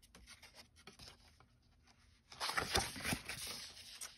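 Paper sheets of a six-by-six patterned paper pad rustling as a page is turned. Only faint handling is heard for the first two seconds or so, then a louder crackly rustle from a little past halfway.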